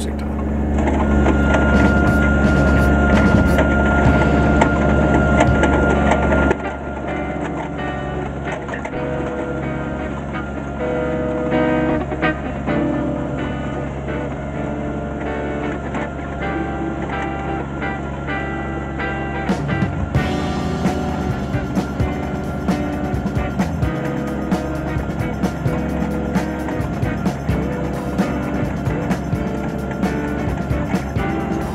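Kubota B2320 compact tractor's three-cylinder diesel engine running steadily while pulling a grading scraper, with background music laid over it. The engine sound drops suddenly about six seconds in, and a clicking beat comes up in the music about two-thirds of the way through.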